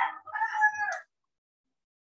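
A rooster crowing: one crow that stops about a second in.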